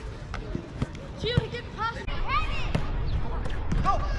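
Young players' high-pitched shouts and calls on a soccer field, mixed with a few sharp thuds of the ball being kicked.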